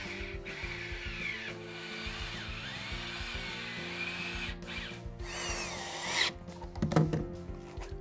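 Cordless drill driving pocket-hole screws into pine boards, its motor whine rising and falling in pitch in several runs, the loudest run about five seconds in. Background music plays underneath.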